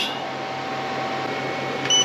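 Steady electrical hum and cooling-fan hiss from a Growatt solar inverter and its charge controllers while they run. Near the end comes a short high beep as a button on the inverter's panel is pressed.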